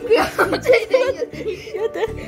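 Young boys laughing and chuckling in short bursts, mixed with a little excited talk.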